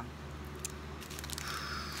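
Small clear plastic bags of diamond-painting drills crinkling and rustling faintly as they are handled, with a few light clicks, over a low steady hum.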